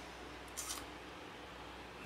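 Low room tone with one brief, soft high-pitched rustle just over half a second in: handling noise from the RC transmitter being held close to the microphone.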